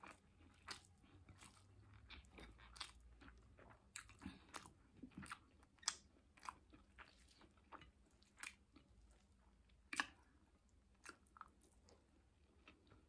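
Quiet close-up mouth sounds of a person chewing a mouthful of rice and sautéed vegetables: soft wet chewing broken by many short clicks and smacks, the loudest about six and ten seconds in.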